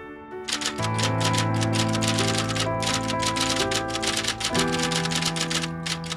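Typewriter keys striking in a quick, even run of several clicks a second, over sustained music chords.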